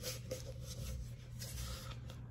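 Faint scratchy rubbing of adhesive vinyl being pressed down through transfer paper onto a cup, in short irregular strokes over a low steady hum.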